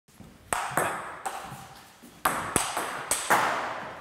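Table tennis ball being hit by bats and bouncing on the table in a rally: about seven sharp clicks at uneven spacing, each trailing a long, ringing echo.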